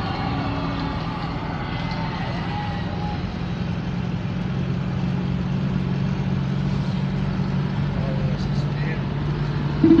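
Steady low engine drone of a moving vehicle, heard from inside its cab while driving along the highway.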